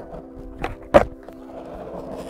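Skateboard wheels rolling on asphalt during a half cab attempt, with two knocks about a third of a second apart a little over half a second in: the tail popping and the board landing, the landing the louder.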